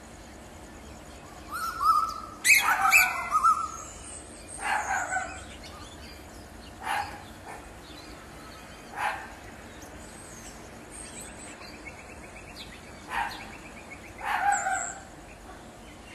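A black, long-tailed bird calling from a tree: harsh barking calls, about seven of them spaced one to four seconds apart, several dropping in pitch at the end.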